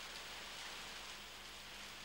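Faint, steady hiss of rain falling on a wet paved street and trees.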